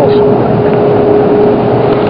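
Steady machine hum and hiss with a single constant mid-pitched tone held throughout, unchanging in level.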